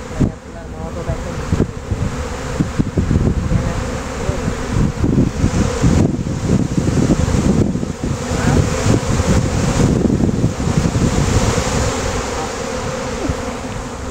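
A swarm of honey bees buzzing in flight around and above a swarm-capture box, a steady loud hum: many bees are leaving the box instead of going in. Gusts of wind rumble on the microphone underneath.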